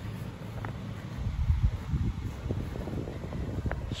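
Wind buffeting the microphone: an uneven low rumble that rises and falls, with a few faint clicks.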